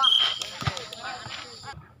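A volleyball hitting with a single thud about two-thirds of a second in, among players' and spectators' shouts.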